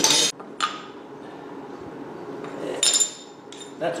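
A small aluminum bronze skull casting being knocked out of its graphite mold onto fire brick: a few sharp knocks and clinks, the loudest a ringing metallic clink about three seconds in.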